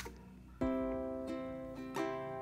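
Acoustic guitar opening a song: a plucked chord rings out about half a second in and slowly fades, followed by a couple of softer notes.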